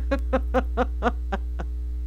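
A woman laughing quietly to herself in a run of short breathy pulses, about four a second, slowing and dying away about one and a half seconds in, over a steady low mains hum.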